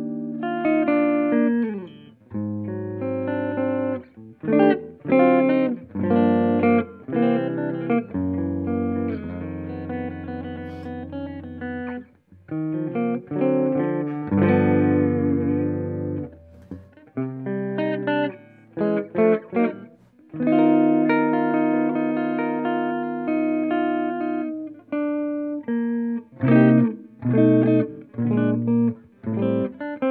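Ernie Ball Music Man Stingray RS electric guitar played fairly clean through a Strymon Iridium amp modeler on its Round setting, gain at noon. Ringing chords and picked melodic runs, with short choppy chord stabs in the middle and near the end.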